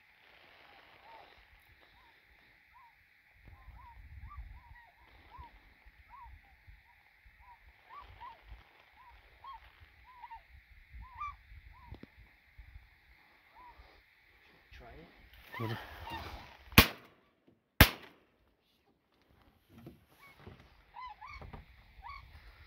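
A flock of tundra swans calling in flight, a long run of short rising hoots, over wind rumble on the microphone. Near the end come two shotgun shots about a second apart, the loudest sounds.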